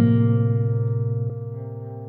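Acoustic guitar chord struck once and left to ring, fading steadily, with a light pluck a little after a second in.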